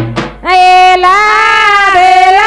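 A woman singing a Banjara folk wedding song into a microphone, amplified: after a brief break, she holds one long note from about half a second in.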